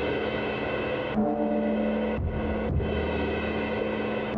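Drum room-mic track from a stereo JZ condenser microphone, heavily compressed and played back on its own: a dense, steady wash of drums and cymbals, squashed flat, with its ringing tones shifting every second or so.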